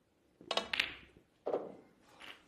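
Snooker balls being struck: a sharp click cluster about half a second in as the cue hits the cue ball and the cue ball strikes the black, then a duller knock about a second later.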